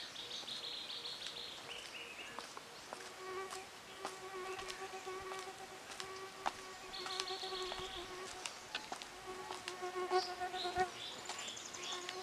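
An insect buzzing in several stretches, a steady hum that cuts in and out from a few seconds in until near the end. A high, steady insect trill sounds at the start and again in the middle, and a few bird chirps come near the end.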